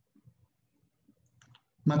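Quiet room tone with a couple of faint, short clicks about one and a half seconds in, then a man begins speaking near the end.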